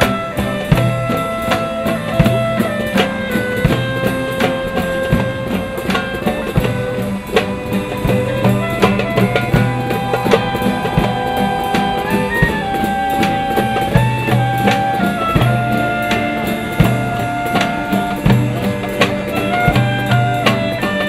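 Live acoustic ensemble of violins, clarinets, acoustic guitars and a drum kit playing a tune together: a melody of held notes moving stepwise over a steady drum beat.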